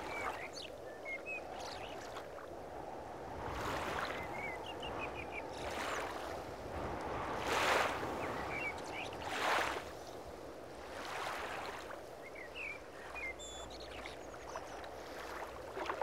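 Nature ambience of flowing, lapping water that swells in surges every one to two seconds, with short bird chirps now and then.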